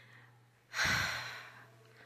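A woman sighing: one long breath out, starting suddenly about a second in and fading away.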